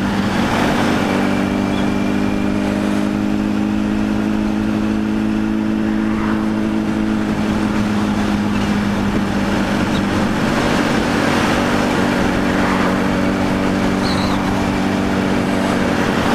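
Sport motorcycle engine running at steady cruising revs, a constant engine hum held at even throttle, with wind and road rush over it.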